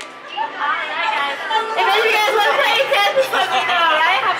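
Chatter of several voices talking and calling out at once, overlapping.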